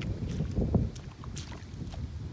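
A hoe working soupy rice-paddy mud, sloshing and squelching as it presses the air out and smooths the mud along the levee. It is loudest just under a second in.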